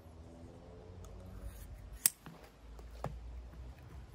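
Shears cutting through a rubber bicycle inner tube: quiet snipping, with a sharp click about two seconds in and a weaker one about a second later.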